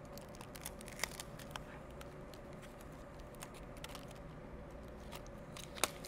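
Faint crinkling and clicking of thin, stiff PET bottle plastic strips being handled and pressed together, with a sharper click about a second in and another near the end.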